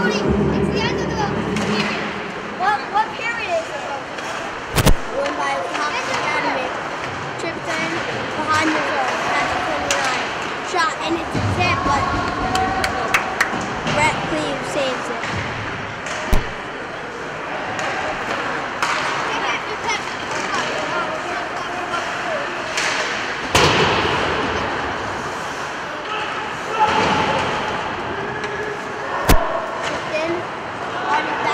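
Live ice hockey play in a rink: skating and stick noise on the ice with voices calling out. Four sharp bangs against the boards break through, about 5, 16, 23 and 29 seconds in.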